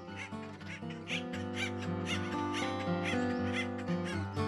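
Background acoustic guitar music, a run of picked notes over held tones.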